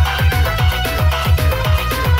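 Loud electronic DJ dance music: a fast booming kick drum that drops in pitch on each hit, about four beats a second, under a high held melody line.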